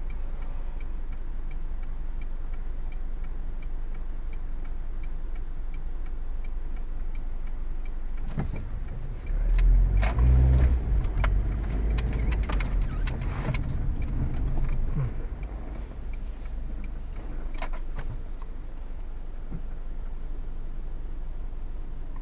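Car engine and road noise heard from inside the cabin, a steady low hum. About nine seconds in, the engine pulls harder as the car accelerates through a turn, louder for several seconds with scattered clicks, then eases back to a steady cruise.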